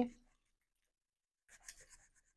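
Silicone spatula scraping and stirring a thick yogurt-and-spice marinade around a glass bowl, faint and brief near the end; the rest is near silence.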